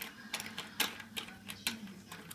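Small plastic action-figure accessories clicking and tapping against each other and the wooden tabletop as a hand sorts through them: a string of irregular light clicks.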